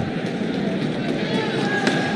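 Ice hockey arena ambience during live play: a steady crowd din from the stands, with a sharp click near the end.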